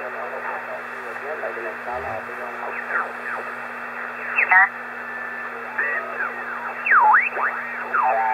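Homebrew HF receiver's speaker output on the 20-metre band in upper sideband: band hiss with a faint voice at first, then, as the tuning knob is turned, whistling tones that glide down and up as signals sweep past, one dipping and rising again near the end. A steady low hum runs underneath.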